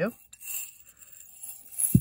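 Small metal eyelets rattling and clinking inside a glass jar as it is tipped upside down and shaken out into a hand, with a sharp knock just before the end.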